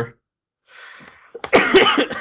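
A man coughing, a short rough burst in the second half, after a faint intake of breath.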